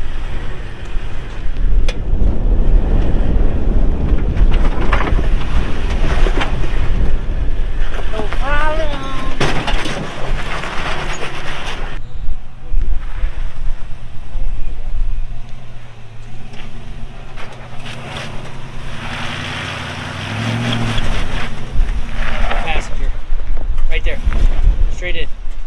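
Off-road vehicles crawling slowly over rock, their engines running low under heavy wind buffeting on the microphone, with indistinct voices. In the second half the wind drops, and a 2006 Toyota 4Runner's 4.7-litre V8 is heard idling and pulling gently as it climbs the rocky trail.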